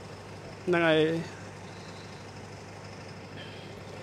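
A parked bus's engine idling: a steady low hum under the quiet street background. A short spoken word comes about a second in.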